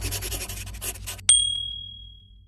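Intro music dying away, then a single bright chime sound effect rings out a little over a second in and fades slowly.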